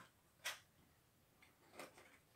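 Two faint clicks from the flap of a small cardboard box being closed, a sharper one about half a second in and a softer one near the end; otherwise near silence.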